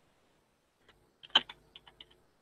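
Computer keyboard typing: a handful of short key clicks in the second half, one louder stroke among them.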